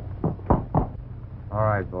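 Three dull knocks about a quarter second apart, the middle one loudest, from the hooves of horses standing under mounted riders, over a steady low hum. A man's voice begins near the end.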